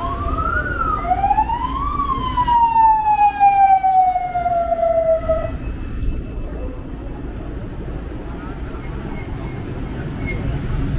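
A whistle-like pitched tone slides up and back down, then rises again and glides slowly down over about three and a half seconds, over steady street traffic noise.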